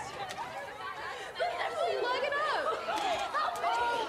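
Several teenage girls' voices calling and chattering over one another, a babble of overlapping cries with no clear words.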